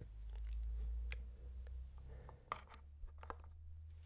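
Wooden chess pieces being handled during a capture on a wooden board: a few faint clicks as the pieces are lifted and set down. A low rumble swells and fades over the first two seconds.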